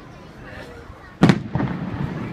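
An aerial firework shell bursting: one sharp, loud bang a little over a second in, followed by a short echoing tail.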